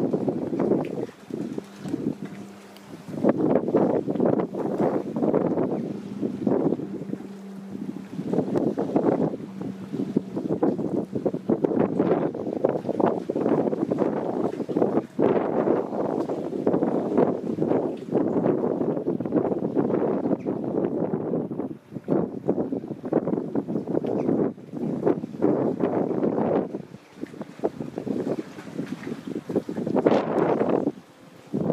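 Wind buffeting the microphone in uneven gusts that rise and fall. A faint steady low hum runs under it for the first dozen seconds or so.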